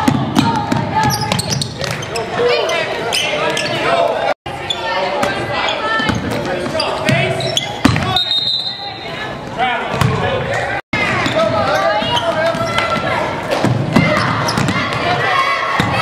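Basketball game in a gym: voices of players and spectators calling and shouting over a ball being dribbled on the hardwood court. The sound drops out completely twice, briefly.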